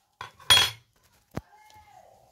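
A metal spoon clattering briefly against glass or a hard counter about half a second in, with a short metallic ring, then a single sharp click a little under a second later.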